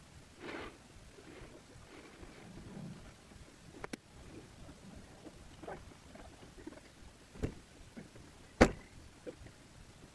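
A few sharp knocks and clicks heard from inside a parked car, spaced seconds apart, the loudest near the end.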